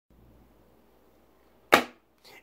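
Near silence, then near the end a single sharp slap as a plastic-and-cardboard blister pack is dropped onto a hard counter, dying away quickly.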